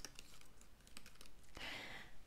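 Fingernails clicking on a laptop keyboard in a quick run of light keystrokes, with a short soft rush of noise near the end.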